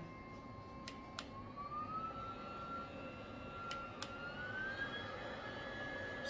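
BioLite CampStove 2's built-in combustion fan running with a faint, steady whine that steps up in pitch twice, about a second and a half in and again about four seconds in, each step just after a pair of button clicks: the fan being stepped up through its speed settings.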